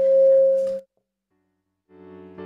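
A steady high ringing tone from the church PA system, microphone feedback, swells louder and cuts off suddenly just under a second in. After a second of silence, a digital piano starts its first chords at the very end.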